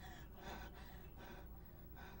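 A woman's faint, quick breaths, a few soft ones spaced about half a second apart.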